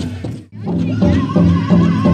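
Pow wow drum and singers: a big drum struck in a steady beat, about three strokes a second, under high, wavering singing. The sound dips out briefly about half a second in, then the drum and singing return.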